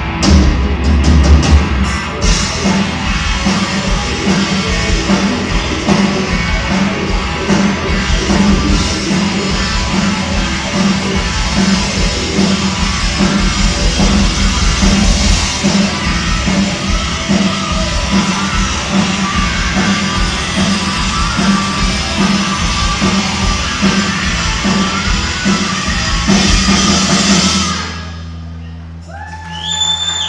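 Rock band playing live through a PA: electric guitars, bass, keyboard and drum kit in a loud, dense song. The band stops about two seconds before the end, and the sound drops sharply.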